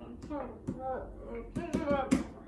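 A woman's wordless voice, mumbling or humming, with a few light knocks of a wooden rolling pin on the wooden board near the end.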